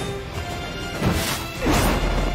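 Anime film soundtrack: dramatic music with crashing impact sound effects, two heavy hits in the second half.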